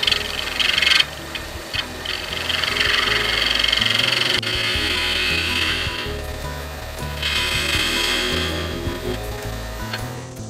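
Turning gouge cutting into the end face of a mallee burl and resin blank spinning on a wood lathe at about 1200 rpm, a hissing scrape that swells in three passes: briefly at the start, again from about two to six seconds, and near the end. Background music runs underneath.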